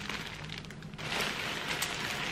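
A thin clear plastic garment polybag crinkling and rustling in irregular crackles as a dress is pulled out of it, louder in the second half.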